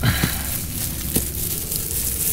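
Paper and bubble-wrap packaging rustling and crinkling as it is handled, with a couple of light knocks.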